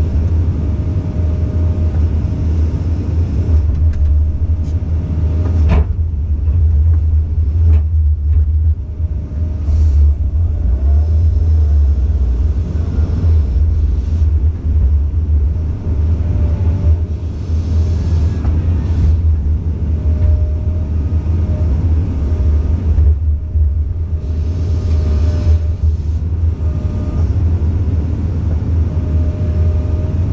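Komatsu PC200 excavator's diesel engine running steadily with a heavy low rumble, heard from inside the cab, while the hydraulics swing and move the bucket; a faint whine comes and goes. One sharp knock about six seconds in.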